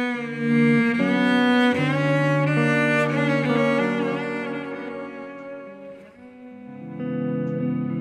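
Bowed cello playing long, sustained notes of a slow ballad melody with vibrato, accompanied by electric guitar. The sound dips briefly about six seconds in before new held notes come in.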